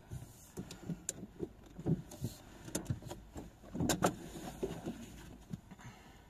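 Scattered soft knocks, clicks and rustles of someone handling things inside a parked car's cabin.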